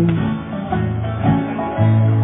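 Live country band playing an instrumental stretch between sung lines of a slow song: acoustic guitar with electric guitar, with notes held steadily underneath.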